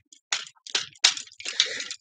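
Plastic Transformers figure parts being handled and pushed together: a run of short clicks and rustles, about five in two seconds.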